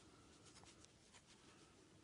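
Near silence, with a run of faint soft ticks and scratchy rustles from a metal crochet hook catching and drawing yarn through stitches, clustered about half a second to a second and a half in.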